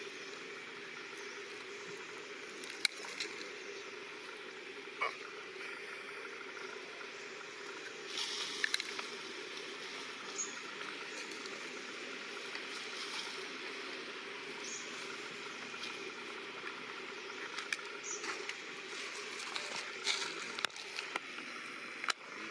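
Dry leaf litter crackling and rustling now and then as macaques shift about on it, over a steady outdoor background hiss. The crackles come thickest about eight seconds in and again near the end.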